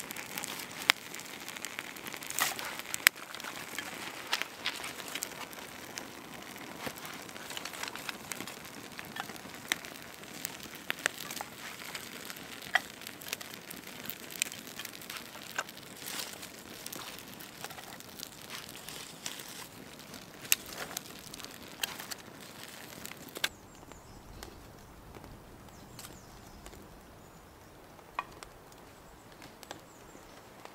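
Newly lit campfire of twig kindling and split oak crackling, with many sharp pops. The crackling thins out and gets quieter over the last quarter.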